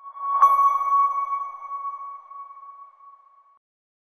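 A single bell-like electronic chime, struck about half a second in, rings at one clear pitch and fades away over about three seconds: an audio logo sting.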